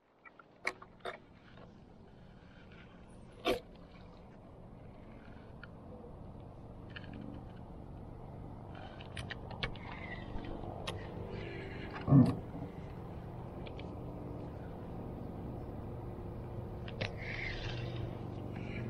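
Steady low hum of a boat motor that slowly grows louder, with scattered small clicks and knocks and one louder thump about twelve seconds in.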